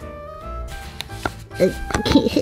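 Light background music, with a few short knocks in the second half as a doll's rubber-soled shoe is handled and pushed onto its foot.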